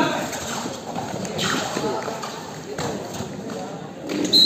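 Several voices shouting at once during a kabaddi tackle, as the raider is brought down by the defenders.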